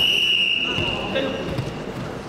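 A referee's whistle blown once: a single steady high blast that starts sharply and fades out after about a second and a half.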